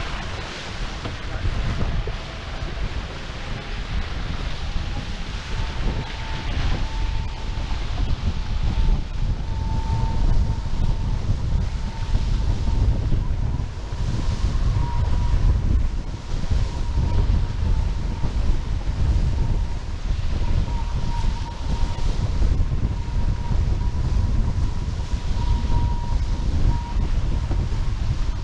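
Wind buffeting the microphone and water rushing past the hulls of an F18 catamaran sailing fast under gennaker. A thin steady whine climbs in pitch over the first several seconds and then holds.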